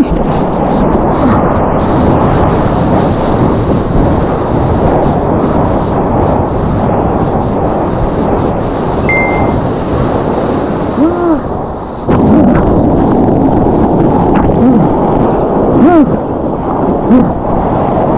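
Rushing whitewater and wind on a surfboard-mounted action camera as the board rides through breaking foam: a loud, steady hiss and rumble that dips briefly about two-thirds of the way through.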